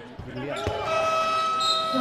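A steady, held horn-like tone that starts about half a second in and runs on unchanged, with a single sharp knock just after it starts.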